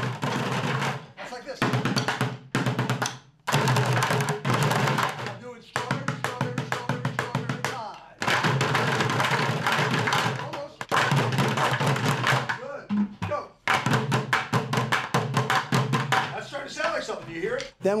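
A group of children drumming with sticks on overturned plastic buckets, playing fast, rhythmic strokes in short phrases that stop and start again.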